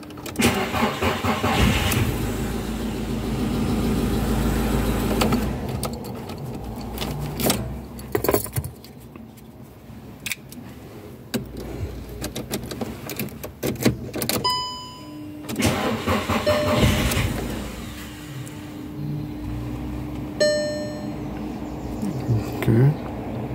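Car keys jangling and clicking as they are handled at the ignition, with the car's engine cranking for a few seconds near the start. Two short beeps follow later on.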